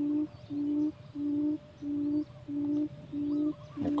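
Electronic bird-lure caller playing a buttonquail's call: a low hoot repeated evenly, about one and a half times a second.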